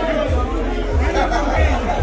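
Indistinct chatter of several voices in a large hall, over background music with a low, regular beat.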